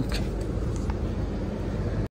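Steady low rumble of a passenger train heard inside a sleeper-class coach, with a couple of faint clicks.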